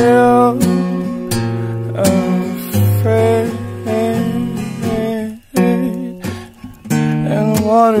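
Music: acoustic guitar strumming chords, with a brief break about five and a half seconds in.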